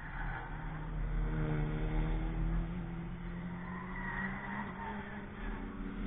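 A car driving past on a racetrack under power, its engine note swelling about a second in and then slowly falling away as it turns off.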